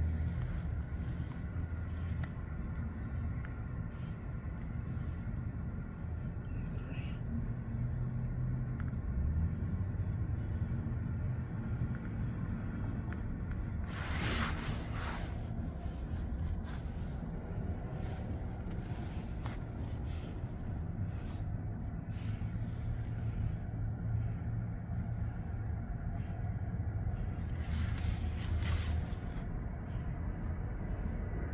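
Steady low outdoor rumble, like wind on the microphone and distant traffic, with a brief rustle of the phone being handled about halfway through and another near the end.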